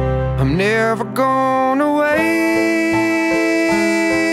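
Background music: a guitar song in which a note slides upward about half a second in, followed by long held notes.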